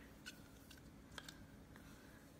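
Near silence with a few faint clicks and scrapes: a silicone spatula scraping thick melted white chocolate out of a glass measuring cup.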